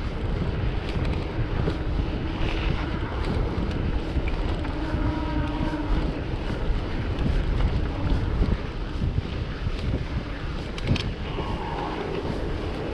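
Wind buffeting the microphone of a handlebar- or body-mounted camera on a mountain bike riding along an asphalt road, a steady rushing noise. A few short clicks come near the end.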